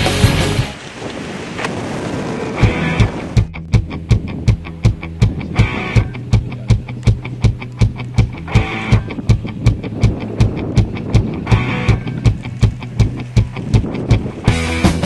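Background music: a loud, dense passage breaks off about a second in, and a steady beat of about three strokes a second follows.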